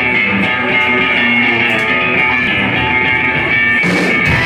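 Live rock band opening a song, with electric guitars playing sustained, ringing chords and notes.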